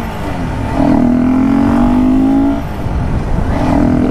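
Honda CBR250R's single-cylinder engine, fitted with a BMC performance air filter, pulling under way. Its pitch dips sharply at the start, climbs steadily, falls away about two and a half seconds in and rises again near the end. Wind rushes over the microphone.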